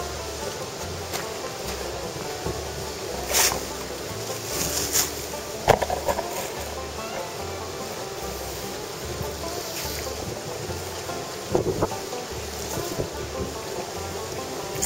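Background music with a slow, stepping bass line, under a steady rushing hiss of outdoor noise, with a few scattered knocks and thumps.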